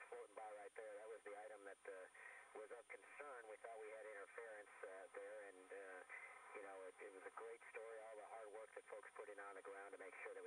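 Faint speech heard over a narrow-band radio or downlink audio channel, the words not made out, with a steady thin high tone underneath.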